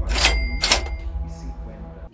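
Cash-register "ka-ching" sound effect: two bright metallic rings about half a second apart, over a deep bass boom and a held musical note.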